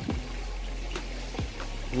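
Fish in an aquaponics tank feeding on floating pellets at the water surface, with a few faint clicks as they take the food in small chomps, over a steady low hum.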